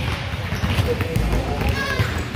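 Several basketballs being dribbled at once on a hardwood gym floor, the bounces overlapping irregularly, with children's and coaches' voices mixed in.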